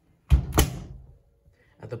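Door of a Bosch WFO2467GB/15 front-loading washing machine being pushed shut: a heavy thump about a third of a second in, then the sharp click of the latch catching.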